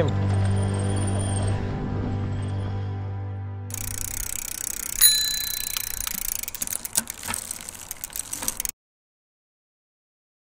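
Background music fading out, then an outro sound effect: a rush of noise and a single bicycle-bell ding about five seconds in that rings briefly, followed by scattered clicks. The sound cuts off suddenly near the end.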